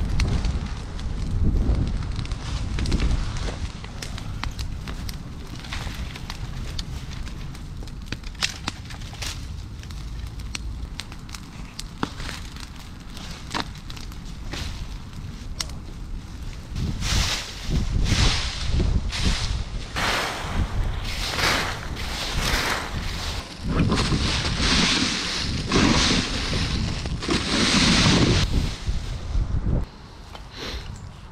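Brush pile fire crackling with sharp pops, with wind rumbling on the microphone. From about halfway on, louder irregular rustling and crunching bursts take over.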